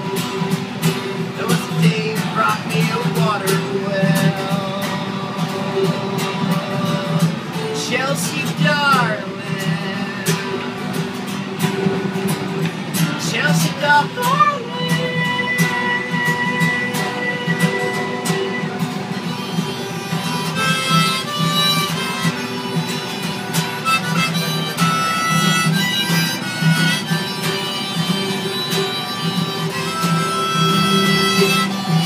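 Acoustic guitar strummed steadily with a harmonica played in a neck rack, an instrumental folk break without singing. Held harmonica notes come in about halfway through, turning into a busy run of short melody notes in the last third.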